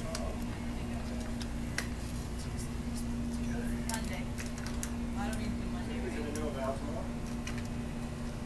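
Light, irregular clicks and clatter from an aluminium folding walker as it is lifted and set down during slow walking, over a steady low electrical hum and faint voices.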